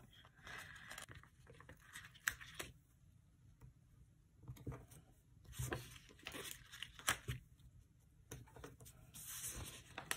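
Faint rustling, peeling and light tapping of paper planner stickers being peeled off their sheet and pressed onto the page. It comes in scattered bursts of small clicks and rustles, with a quiet stretch around three to four seconds in.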